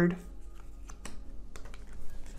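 A few faint, scattered clicks and light taps of tarot cards being handled on a table.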